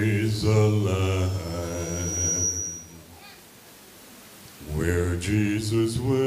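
A man singing solo and unaccompanied into a microphone, holding long notes with vibrato. He stops for about two seconds in the middle, then sings on.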